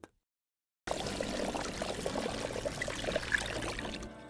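Water trickling and lapping in a bucket as a spool of fishing line turns in it while the line is wound off onto a reel, with many small crackles. It begins about a second in after a moment of silence.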